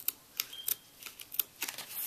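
Fingers handling and unfolding a folded paper insert, making light irregular paper clicks and crackles, several each second.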